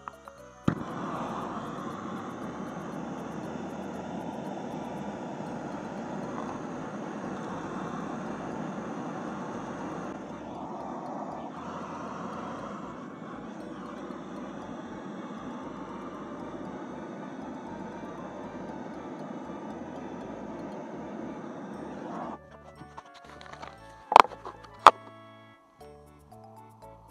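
Handheld butane cartridge gas torch lit with a click about a second in, then burning with a steady hiss for about twenty seconds before it is cut off abruptly. Two sharp clicks follow near the end.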